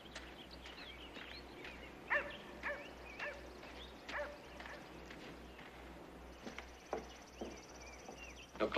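A dog barking faintly, four short barks a little over half a second apart, with a few faint knocks near the end.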